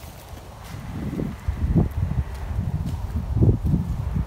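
Low, uneven rumble on the microphone that starts about a second in and swells in a few stronger pulses.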